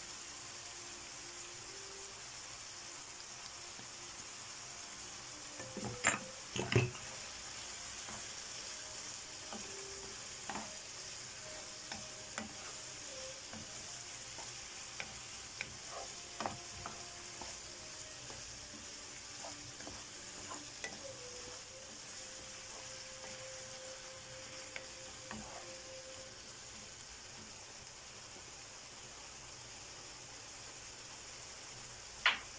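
Shrimp and chopped vegetables sizzling steadily in a frying pan while a wooden spoon stirs and scrapes through them. Scattered knocks of the spoon against the pan come throughout, the loudest pair about six seconds in.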